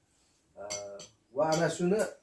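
Clinking of dishes and cutlery at a laid table, mixed with short bursts of a man's voice after a brief pause.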